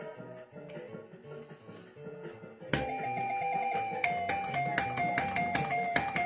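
Fruit King 3 fruit slot machine playing its electronic sounds. A faint tune runs at first; about two and a half seconds in, a louder beeping melody starts suddenly, its held tones stepping up and down in pitch, with short clicks scattered through it as bets are entered.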